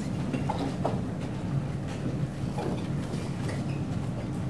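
Room noise of a large room: a steady low hum with a few faint light clicks.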